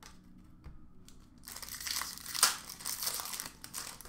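A plastic trading-card pack wrapper crinkling as it is torn open and pulled off the cards, a run of crackling starting about a second and a half in.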